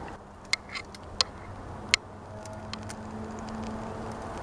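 A man drinking from a glass beer bottle: three short sharp clicks in the first two seconds and a few fainter ticks after, over a faint steady low engine hum.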